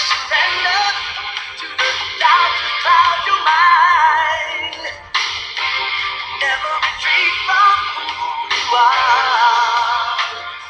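A song playing: backing music with a sung vocal line that wavers in pitch, in phrases that start abruptly every few seconds.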